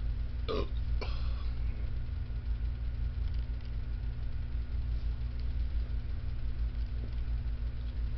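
A man burps twice near the start, over a steady low hum.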